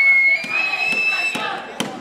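A crowd of students shouting and cheering, with a long high-pitched cry held over the noise and sharp claps about twice a second.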